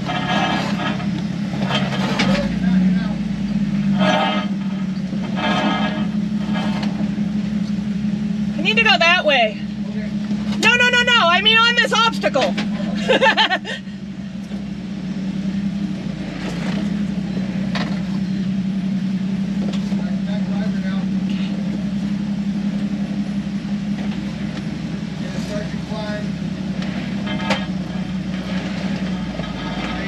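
Jeep engine running at low revs with a steady drone as it crawls slowly through a rock slot. A voice calls out several times about nine to thirteen seconds in, louder than the engine.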